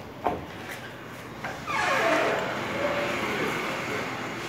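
A vehicle passing in the street: it swells quickly a little before halfway, with a sweeping pitch, then slowly fades. A single sharp knock comes just before it.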